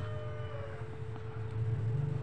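A steady low electrical hum, with a faint, long drawn-out animal call in the background that fades out under a second in.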